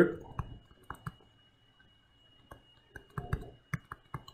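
Faint, irregular clicks and taps of a stylus on a drawing tablet during handwriting, about seven over a few seconds, with a thin steady high-pitched whine underneath.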